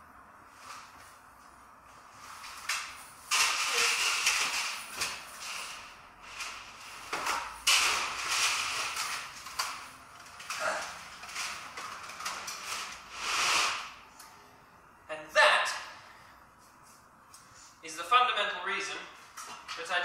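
Metal chainmail jingling and rattling in several bursts as the mail shirt is dragged off over the head, with a sharp clink partway through.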